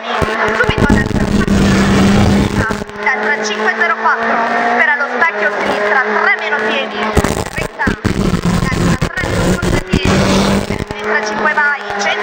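Renault Clio Williams rally car's engine pulling hard at racing speed, heard from inside the cockpit. The revs rise and fall through the bends, with short dips in loudness near the 8-second mark and again about 9 to 10 seconds in, where the driver lifts or shifts.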